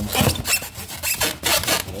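Styrofoam packaging being rubbed and scraped by hand, a series of rough rasping strokes.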